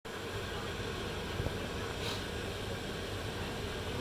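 Steady low hum and hiss of background noise, with one faint click about one and a half seconds in.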